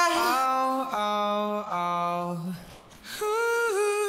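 Isolated male vocal track with no backing music, singing long held notes without clear words: two sustained notes over the first two and a half seconds, a brief drop in level, then another held note near the end.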